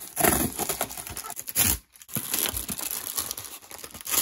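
Cardboard postal package being slit with a blade and torn open, with rough tearing and crackling of the cardboard and its packing; the noise breaks off briefly just before halfway, then carries on.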